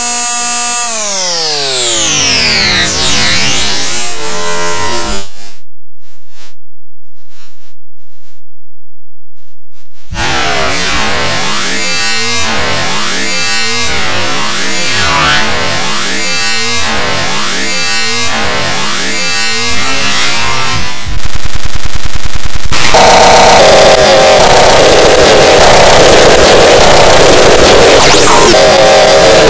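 Harsh, heavily distorted electronic audio effects: falling pitch sweeps, then a break about five seconds in. After that comes a sweeping pattern that repeats about every second and a third, and near the end a louder, dense, noisy stretch.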